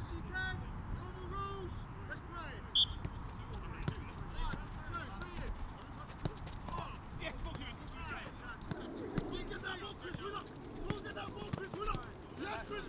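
Footballers calling out and shouting to each other during a passing drill on a training pitch, mixed with the short knocks of a football being struck. A brief sharp high call stands out about three seconds in.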